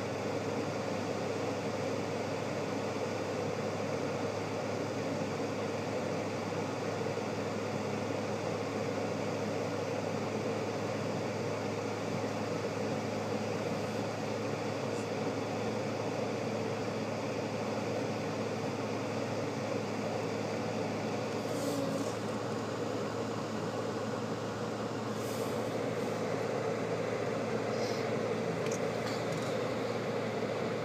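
Tesla Model S climate-control fans ramped up with the air-conditioning compressor running: a steady rush of air over a low hum, heard inside the cabin. A few faint ticks come in the second half.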